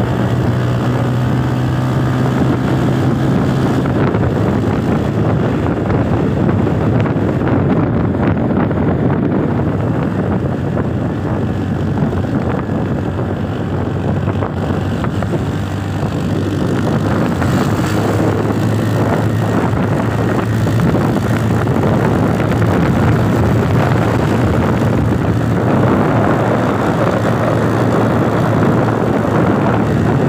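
Engine of a moving vehicle running steadily at road speed, a low hum under continuous wind and road noise.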